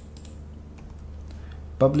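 Light, irregular clicks of computer keyboard keys being typed, over a faint steady low hum.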